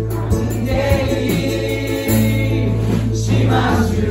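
Live worship band playing a gospel-style praise song, with electric bass, keyboard and drums under a group of voices singing.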